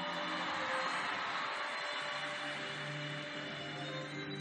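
Arena crowd applauding a landed tumbling pass, the applause slowly fading, over soft sustained floor-routine music.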